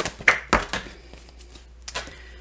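Tarot cards being handled: a few light taps and clicks in the first half-second, then a single sharp snap of a card near the end as one is drawn and laid down on the table.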